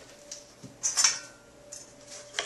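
A few light plastic clicks and knocks, the clearest about a second in, as the plunger is set into the feed chute of a Green Star Twin Gear juicer, over a faint steady hum.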